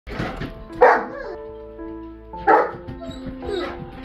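A large dog barking twice, about a second in and again at two and a half seconds, over background music with sustained notes. The barks come from a dog upset at its companion dog being taken out of the house.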